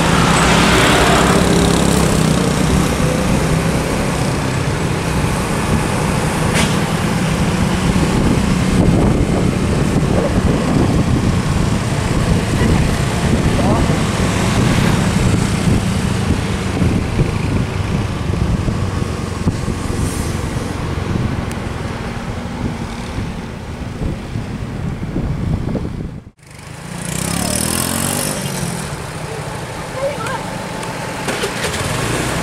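Road traffic: engines of a truck, buses and motorcycles with a steady low engine drone. The sound cuts off abruptly near the end and comes back with a bus engine close by.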